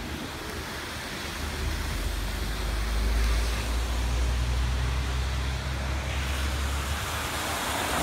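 City traffic on a rain-soaked road: tyres hissing on the wet asphalt as vehicles pass, with a deep rumble that builds about two seconds in and fades near the end.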